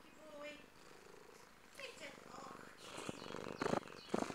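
A tabby cat purring right at the microphone, with a couple of loud scuffing bursts near the end.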